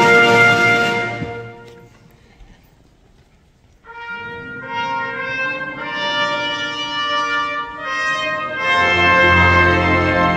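Symphony orchestra playing live. A loud chord dies away in the first couple of seconds and leaves a brief hush. Brass then enter with held chords that change about once a second, and the full orchestra with a deep bass comes back in near the end.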